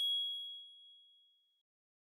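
A single bright chime played with an animated logo: one high ding that rings out and fades away over about a second and a half.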